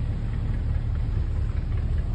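Houseboat engine running steadily while the boat is underway, a continuous low rumble.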